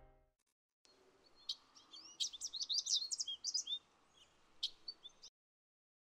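Songbirds chirping, a run of short quick chirps over a faint hiss of outdoor ambience. It starts about a second in and cuts off suddenly a little after five seconds. The last of the background music dies away at the very start.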